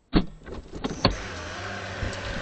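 Two loud knocks about a second apart as the dashcam is knocked and moved on its windscreen mount, swinging its view up to the sky, followed by a steady hum.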